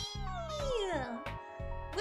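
A long meow-like cry that falls steadily in pitch over about a second, heard over soft background music.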